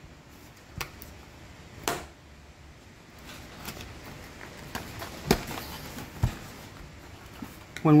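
A small cardboard box being opened by hand: faint paper rustling with a few sharp clicks and taps as the end flap is pried loose and the lid lifted, the loudest about two seconds in and about five seconds in.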